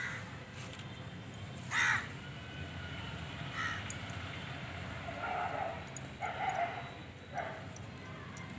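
A crow cawing about five times in short, separate calls, the loudest about two seconds in.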